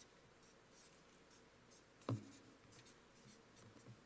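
Near silence: quiet room tone with faint scratchy rustles and one brief soft thump about halfway through.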